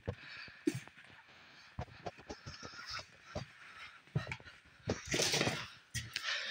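Footsteps and debris shifting underfoot on a cluttered trailer floor: scattered light knocks, clicks and creaks, with a louder rustling rush about five seconds in.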